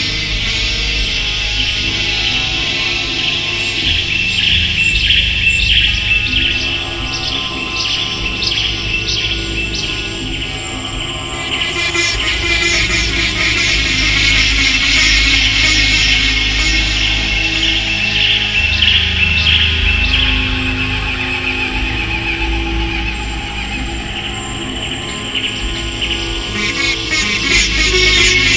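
Sitar being played, a quick run of bright plucked notes over a low steady drone; the playing thins out for a moment around the middle before picking up again.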